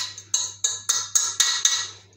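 Metal utensil scraping and knocking inside a stainless steel saucepan as spinach filling is scraped out, in quick, even strokes about four a second with a slight metallic ring. The strokes stop just before the end.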